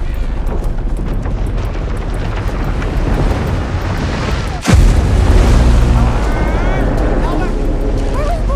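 Animated-film soundtrack: a dense low rumble under music, broken about halfway through by a sudden deep boom, with heavier rumbling after it.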